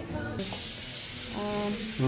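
A dental air-line tool hissing steadily in the mouth during the fitting of braces, starting abruptly about half a second in.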